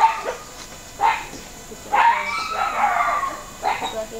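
A dog barking a few times, about a second apart, with one longer bark in the middle.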